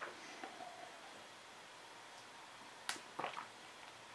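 Faint sounds of a man sipping beer from a glass. About three seconds in comes a sharp click of the mouth, then a short puff of breath as he tastes.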